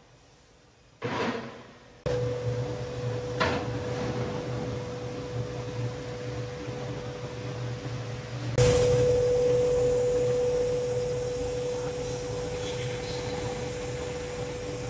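A single knock about a second in as the aluminium ingots are handled, then the steady hum of foundry machinery with one steady tone in it, stepping up louder about eight and a half seconds in.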